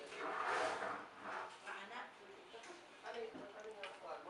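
Indistinct voices of people talking in a small room, loudest about half a second in.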